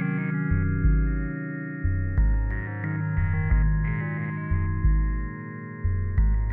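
Background music with a steady beat, a strong low pulse coming about every second and a third under sustained pitched notes.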